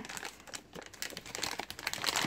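Foil pouch of coffee pods crinkling and crackling as it is handled in the hand, a quick irregular patter of small crackles that grows busier toward the end.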